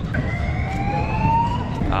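Outdoor street noise: a steady low rumble, with one thin high tone rising slowly in pitch for about a second in the middle.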